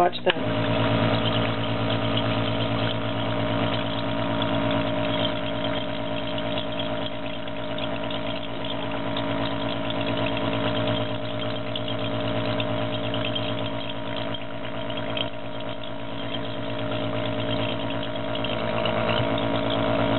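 A pulmonary nebulizer's air compressor switches on and runs with a steady electric hum. Its air bubbles through essential oil in a glass bottle.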